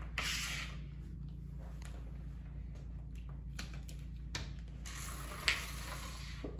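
A flat mop's pad swishing across a wood floor as it shoves a plastic lid along, once just after the start and again about five seconds in, the second push ending in a sharp click.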